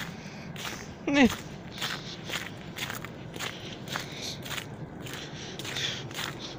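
Footsteps in fresh snow at a steady walking pace, about two to three steps a second.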